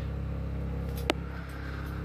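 Whynter 13,000 BTU dual-hose portable air conditioner running with a steady hum, cooling the trailer. There is a single sharp click about a second in.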